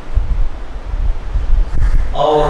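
Air buffeting a microphone: a loud, uneven low rumble with almost nothing above the bass.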